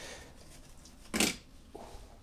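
Brief rustle of a cloth drawstring coin pouch and a cardboard 2x2 coin holder being handled, one short burst about a second in.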